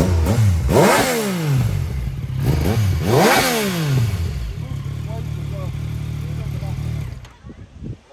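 Motorcycle engine revved hard twice, the pitch rising and falling back each time, then idling steadily before it stops suddenly about a second before the end.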